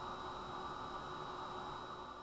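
Steady low hiss of room tone with a faint, steady electrical hum and a thin high whine, fading slightly near the end.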